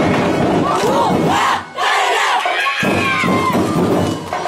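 A group of voices shouting and chanting together over percussion music. The drumming drops out for about a second in the middle while the shouts carry on, some held long.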